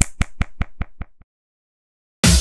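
A quick run of about seven sharp clicks, evenly spaced at about five a second, fading away over about a second.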